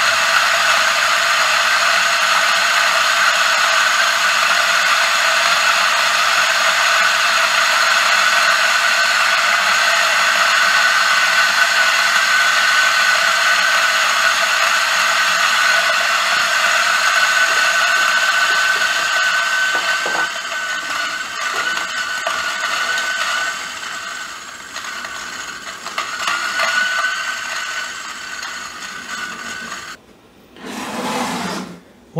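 DF64V flat-burr coffee grinder with SSP blind burrs and a slow feed disc grinding a dose of espresso beans: a steady motor whine with the rattle of beans feeding through the burrs. About two-thirds of the way through, the whine fades and the sound turns uneven and weaker with a few knocks as the last beans clear the burrs.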